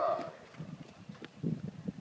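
Horses' hooves walking on a sand arena: a few soft, irregular thuds.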